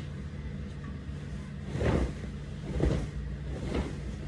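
A quilted comforter being flapped out over a bed: three quick whooshes of fabric about a second apart, over a steady low hum.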